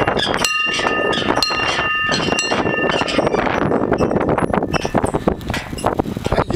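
Metal bell in a swinging yoke on top of a post being rung over and over, its clapper striking about twice a second with a ringing tone that carries between strokes. The ringing is fullest in the first half and thins out later, over steady outdoor noise.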